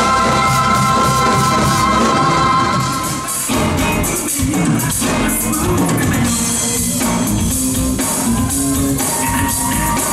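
A live band playing on stage. For the first three and a half seconds a chord is held with steady sustained tones; then the music switches to a driving groove with bass and drums.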